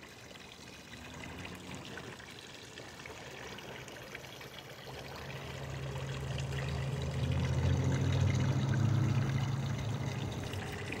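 Water splashing and trickling down the tiers of a three-tiered garden fountain. From about halfway a low hum builds up underneath and is loudest near the end.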